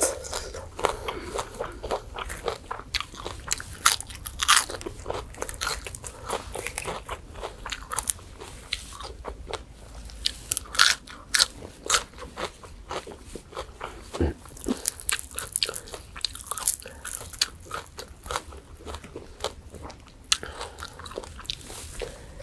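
Close-miked crunching and chewing of crispy deep-fried pork tail, many sharp irregular crunches throughout with the loudest bites about four and eleven seconds in.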